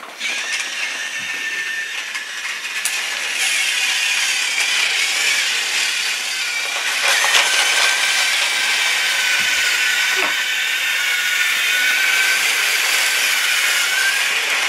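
Battery-powered motorized TrackMaster toy engines running on plastic track: a steady whirring of small motors and gears with a faint high whine.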